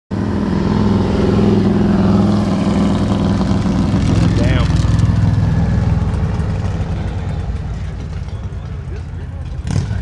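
Motorcycle engine running steadily, loudest over the first several seconds and then dying away, with a sharp click just before the end.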